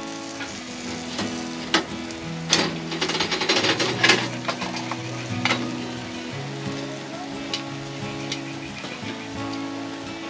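Buttered garlic bread slices sizzling in a frying pan on a gas stove, with a few sharp clicks about two and a half and four seconds in. Background music with held notes plays under it.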